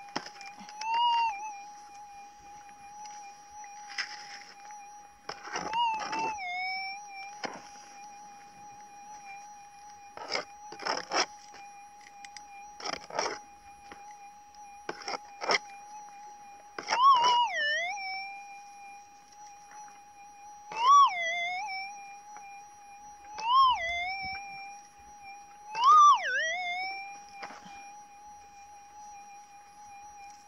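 Minelab SDC 2300 gold detector humming a steady threshold tone, which swells up and dips in pitch several times, loudest in the second half: the detector's signal from a shallow target in the hole being dug. Short scratchy noises of digging come between the signals in the first half.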